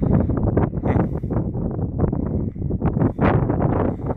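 Wind buffeting the microphone: an uneven, low rushing noise that swells and dips in gusts.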